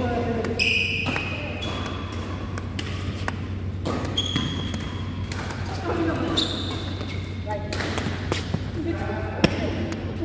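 Badminton doubles rally indoors: sharp racket hits on the shuttlecock about once a second, with shoes squeaking on the court floor and players' voices. A steady low hum runs underneath.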